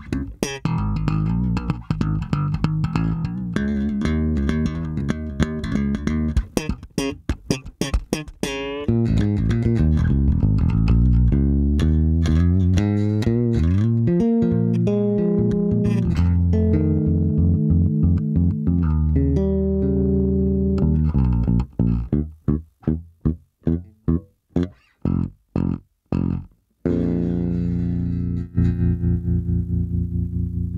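Chowny SWB Pro active electric bass played solo: flowing lines of sustained notes, then a run of short, separated staccato notes about two a second, settling back into held notes near the end.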